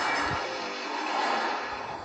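Toyota Supra passing at speed, a steady rush of car noise that swells about a second in, mixed with background music and heard through a television's speaker.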